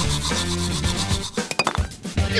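A toothbrush scrubbing back and forth over teeth and foam, with background music. The music cuts off a little over a second in, leaving a few quick scrubbing strokes.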